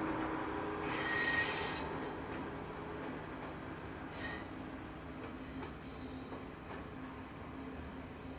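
Passenger train rolling past on the rails, its wheels and carriages running steadily, with brief high wheel squeals about a second in and again about four seconds in; the sound slowly fades as the train moves on.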